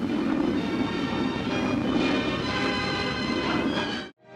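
Music on an old newsreel soundtrack, playing steadily and fairly loud.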